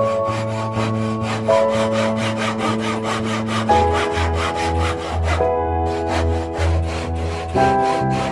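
Japanese handsaw cutting into a laminated wooden board, with quick, even rasping strokes, about three a second. Background music plays throughout.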